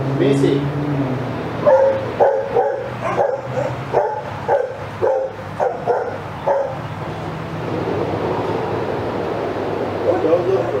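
A dog barking in a quick string of about ten barks, roughly two a second, starting a couple of seconds in and stopping before the last few seconds.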